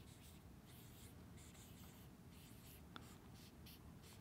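Faint strokes of a marker pen writing on a board, with one small click about three seconds in.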